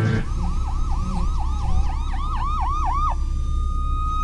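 Police siren in a fast yelp, rising and falling about four times a second, then holding one steady high tone for the last second or so, over a low rumble.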